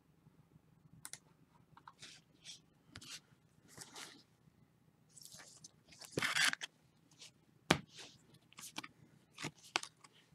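Trading cards and a clear plastic card sleeve being handled: faint scattered rustles and slides, a louder rustle about six seconds in and a sharp tap of a card just before eight seconds.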